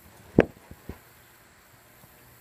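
A single dull thump about half a second in, followed by two faint knocks, then a quiet, steady background.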